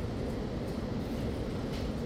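Steady low background rumble of room noise with a few faint ticks.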